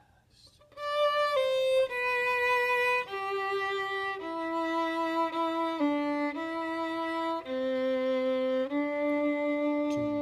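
Violin playing a slow melody in long bowed notes, about nine of them, beginning about a second in after a short pause.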